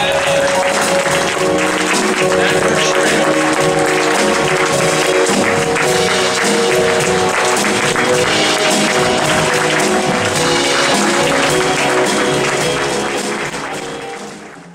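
Live jazz band with piano, double bass and drums playing as an audience applauds over it, the sound fading out near the end.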